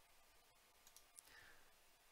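Near silence with a couple of faint computer mouse clicks about a second in.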